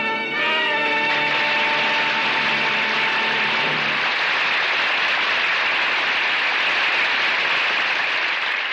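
Closing music of a 1947 radio drama ends on a held chord within the first few seconds, under steady studio-audience applause that carries on after the music stops.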